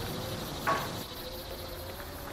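Faint insect chirping over a steady low hum, with one brief louder sound a little before the middle.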